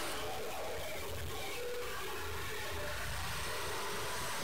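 Steady low background hiss with a faint low hum, unchanging throughout, with no distinct event.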